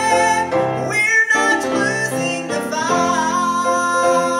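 Women singing a church song together with instrumental accompaniment; the voices break off briefly about a second in.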